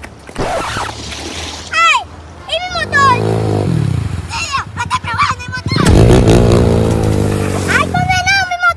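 Dirt-bike engine revving as it rides through a shallow river, water splashing around it; the engine is loudest in the last two seconds. Short high-pitched vocal exclamations come a couple of seconds in.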